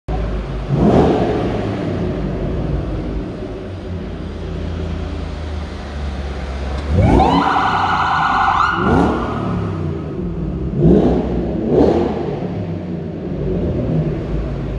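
Police siren giving short rising whoops, plus one longer wail that climbs and holds steady for about a second and a half some seven seconds in. Underneath is the low rumble of car engines running as the cars roll slowly by.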